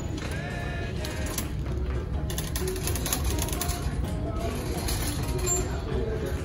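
Store background music playing faintly over the shop's sound system under a low hum, with some light clicking midway.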